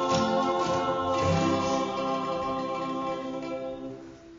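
Women's voices singing in harmony with acoustic guitar and a small plucked string instrument, holding a long final chord that fades away near the end.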